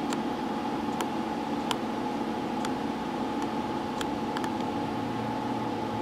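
Steady electrical hum and fan whir from a running xenon arc lamp rig, powered by an arc welder and cooled by a small fan, with a few faint clicks.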